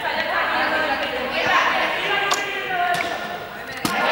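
Many voices of a group talking at once, indistinct and echoing in a large sports hall, with two sharp knocks, one a little past the middle and one just before the end.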